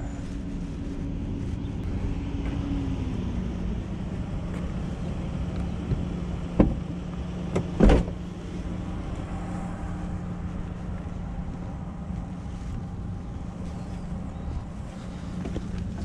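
Ram ProMaster 2500 van idling steadily, a low even hum. Two sharp knocks a little over a second apart cut through it in the middle, the second louder.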